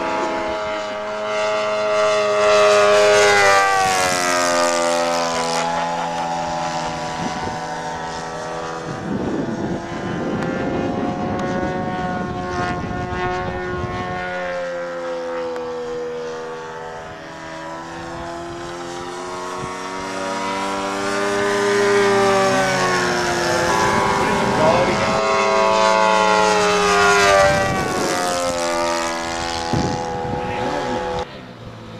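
Engine and propeller of a radio-controlled Hellcat scale model in flight. Its note rises and falls in pitch and loudness as it makes passes, loudest around three to four seconds in and again over the last several seconds.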